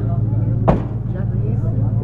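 A small engine running steadily with a low, even hum, and a single sharp knock about two-thirds of a second in.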